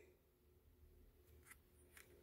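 Near silence: room tone with a faint steady hum and two faint short ticks, about a second and a half in and near the end, from tarot cards being handled.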